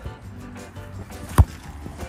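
A single sharp thump of a football being kicked, about one and a half seconds in, over background music.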